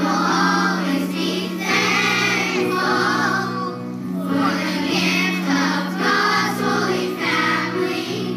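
Background music: a choir singing over instrumental accompaniment, with a steady low note held underneath.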